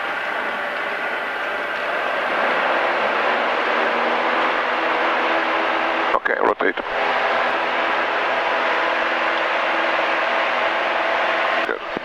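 Single-engine light aircraft's piston engine and propeller at full takeoff power during the takeoff roll and lift-off, heard inside the cockpit as a steady drone. It builds over the first couple of seconds and then holds, with a brief drop-out about six seconds in.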